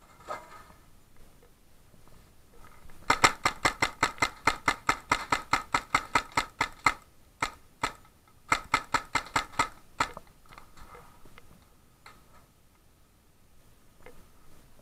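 Paintball marker firing a rapid string of shots, about five a second for nearly four seconds. Two single shots follow, then another short burst.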